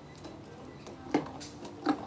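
A banana being opened by hand: two sharp snaps about a second in and near the end as the stem is broken and the peel torn back.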